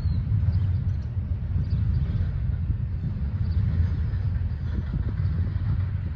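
Double-stack intermodal freight train rolling past at a distance, a steady low rumble.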